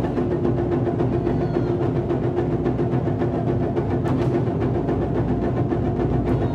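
Taiko ensemble drumming: many players striking chu-daiko barrel drums with wooden bachi in a fast, continuous roll of dense, evenly packed strokes that blends into a steady rumble.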